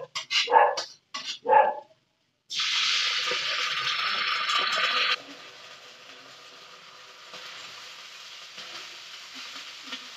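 A dog barks a few times in the first two seconds. About two and a half seconds in, a loud sizzle starts suddenly as liquid is poured from a small cup into a hot wok, then after a few seconds it drops to a softer, steady frying sizzle while the pan is stirred.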